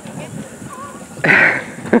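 A woman's short breathy laugh close to the microphone, about a second in, over faint children's voices in the distance.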